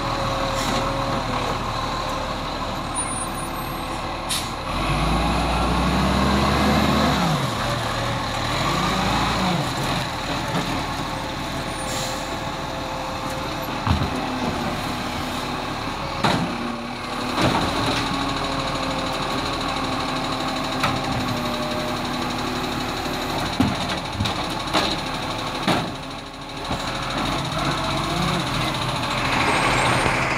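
Iveco Acco side-loader garbage truck's diesel engine running, revving up and down a couple of times, with air-brake hisses and several sharp clanks as its automated arm grabs and lifts a wheelie bin.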